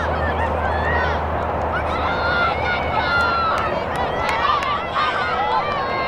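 Overlapping shouted calls from players and spectators during a girls' lacrosse game, with many voices rising and falling in pitch over a general crowd murmur and a few sharp clicks.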